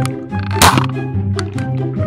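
A toy foam-dart blaster fired once: a single short, sharp snap about half a second in. Background music with a steady bass line runs throughout.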